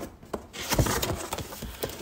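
A hand rummaging in a cardboard shipping box: cardboard rubbing and scraping, with a couple of light knocks.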